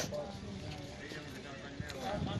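Faint voices of people talking in the background, with a brief click near the end.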